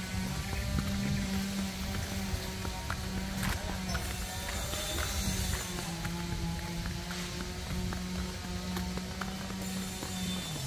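A motor engine drones at a steady pitch, dipping slightly about halfway through. Footsteps sound on a concrete path.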